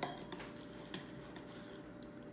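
Metal spoon clinking against a ceramic bowl while scooping cereal and milk: one sharp clink at the start, then a few faint taps.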